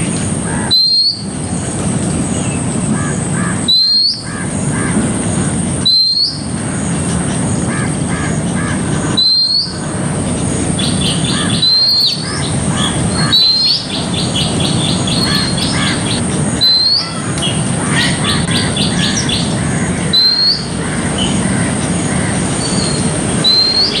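Oriental magpie-robin calling: a short upslurred whistle repeated every two to three seconds, with quick runs of short chirps in the middle stretch.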